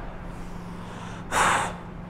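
One short, sharp breath, like a sigh or snort, about a second and a half in, over a steady low room hum.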